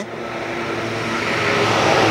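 Road traffic on the highway: a vehicle approaching, its road noise growing steadily louder, over a faint steady low hum.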